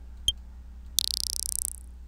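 An electronic vibraslap drum sample, Acoustica Studio Drums' 'Elec Vibra-Slap 2', played once as a preview. It is a high, fluttering rattle that fades out in under a second, and a mouse click comes just before it.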